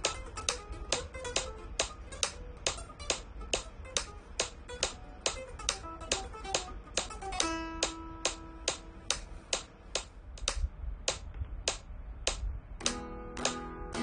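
Flamenco guitar playing picado runs over three-string arpeggios against a metronome clicking at about 140 beats a minute. The clicks are the loudest sound. About halfway through, the playing ends on a held note and the clicks carry on alone. Near the end, rasgueado strummed chords start over a slower click.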